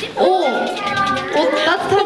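A woman's high-pitched voice through a microphone, in short playful phrases that slide up and down in pitch.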